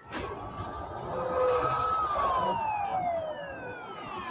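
Emergency-vehicle siren in the drama's soundtrack: one slow wail that climbs a little, peaks about halfway, then falls steadily in pitch. It sounds over a steady rumble of vehicles.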